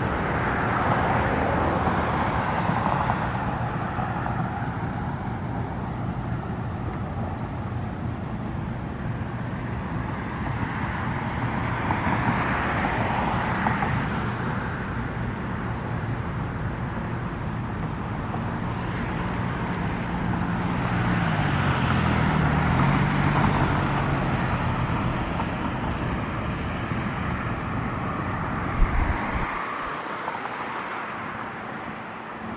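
Road traffic nearby: cars passing in slow swells of noise, over a low engine drone that dips and rises in pitch about two-thirds of the way through. There is one short knock near the end.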